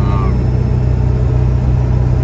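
Steady low engine and road noise heard inside the cab of a truck that is being driven.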